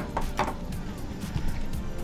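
A pocket knife set down on a shop counter with a sharp click, then a lighter knock about half a second later, over faint background music.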